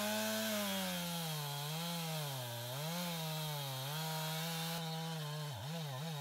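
Stihl MS 271 Farm Boss two-stroke chainsaw at full throttle, crosscutting a large red oak log; the engine pitch keeps sagging and recovering as the chain loads up in the cut, with a sharper dip near the end.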